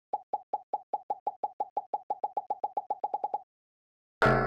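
A rapid run of about two dozen short cartoon plop sound effects that come faster and faster and stop about three and a half seconds in. They mark speech bubbles popping onto the screen in an animation.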